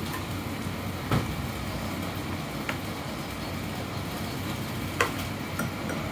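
Tableware at a meal: fork and chopsticks knocking lightly against plates and bowls, four short separate clicks, the first about a second in and the sharpest about five seconds in, over a steady room hum.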